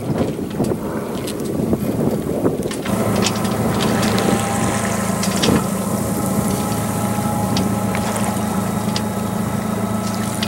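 A boat motor runs with a steady low hum, over wind and water noise and scattered short taps. The hum is absent for the first few seconds and comes back about three seconds in.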